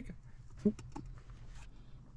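A short pause in speech with a faint, steady low hum, a few small clicks and a brief vocal sound about two-thirds of a second in.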